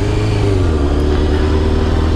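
Sportbike engine pulling the bike along under steady throttle: its pitch sags slightly about two-thirds of a second in, then holds steady, over a rush of wind noise.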